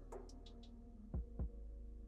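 Two soft, low thumps about a quarter second apart, a little past the middle, over a faint steady hum, with a few faint light ticks before them.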